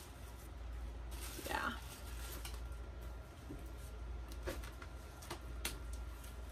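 Purses being handled and rummaged out of a cardboard box: faint rustling with a few sharp clicks near the end, over a low steady hum.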